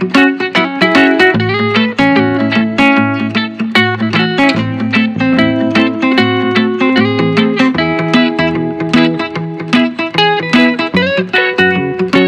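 Instrumental background music: a busy run of plucked, guitar-like notes over a steady bass line.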